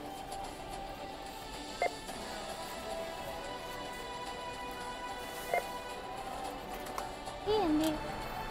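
Self-checkout barcode scanner beeping twice, a few seconds apart, as items are scanned, over steady background music. A voice starts near the end.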